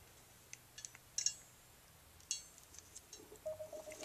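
A few faint, short clicks and ticks of a ratcheting crimper and a metal ring terminal being handled as the wires are fitted into the crimper's jaws.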